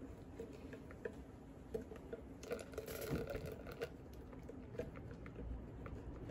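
Metal whisk working in a glass bowl of eggs while hot milk mixture is ladled in to temper them: faint, irregular light clicks and taps.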